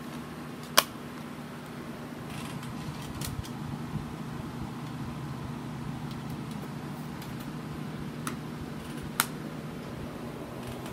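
Plastic clicks from handling a DVD in its case: one sharp click about a second in, a few lighter ones, and another sharp click near the end, all over a steady low hum.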